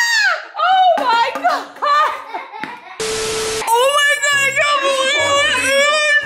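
A woman screaming in fright, then wailing in long, high, wavering cries. A brief burst of hiss comes about halfway through.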